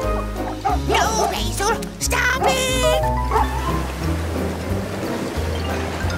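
Cartoon dog barking and yelping in a quick burst during the first half, over upbeat background music.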